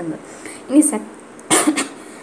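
A person coughing once, a short harsh burst about three quarters of the way through, after a brief vocal sound just before the middle.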